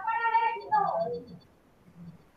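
A cat meowing: one drawn-out call that holds its pitch for about half a second, then falls away.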